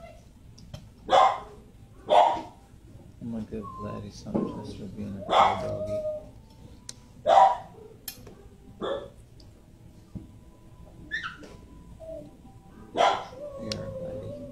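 Dogs barking in shelter kennels: about half a dozen sharp single barks at uneven intervals, with the loudest near the start, in the middle and near the end.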